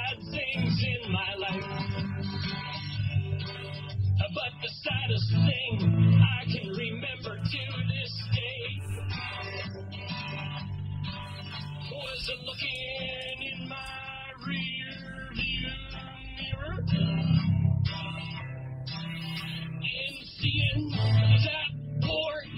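Instrumental break of a comic song, guitar-led with bass, between sung verses. It is heard as an AM radio broadcast, with the high end cut off.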